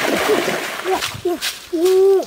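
Legs splashing hard through shallow stream water as a person wades quickly; the splashing dies away about a third of the way in. A few short voiced sounds follow, the last one held and loudest near the end.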